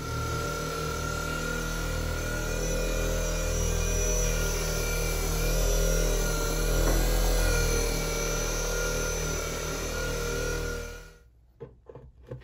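Ryobi orbital buffer running steadily on a wooden tabletop with a bonnet pad, working Rubio Monocoat oil finish into the wood. It cuts off about a second before the end.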